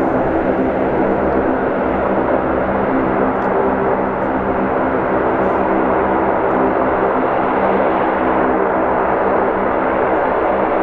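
A steady, unbroken drone: a rushing noise with a low hum of several steady tones beneath it, unchanging throughout.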